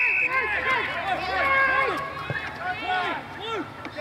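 Several men shouting and calling out over each other, with one short, steady blast of an umpire's whistle that ends just as the sound begins.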